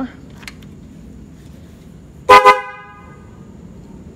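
Motorcycle electric horn giving one short, loud blast about two seconds in, ringing briefly after. It is a test press showing the horn works again, now that the aged wire between the relay and the horn has been rejoined.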